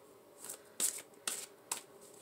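A deck of tarot cards being shuffled by hand: four brief papery flicks about half a second apart.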